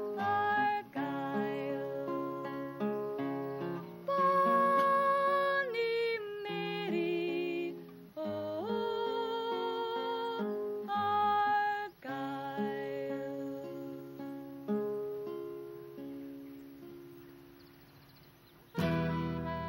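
A woman singing a slow folk ballad in long held notes to acoustic guitar accompaniment. About twelve seconds in the singing ends and the closing guitar notes ring out and fade away.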